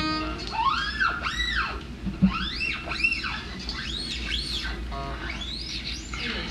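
Acoustic guitar played with quick sliding notes that rise and fall in pitch, about seven glides, often in pairs, over a low steady hum. A short knock comes about two seconds in.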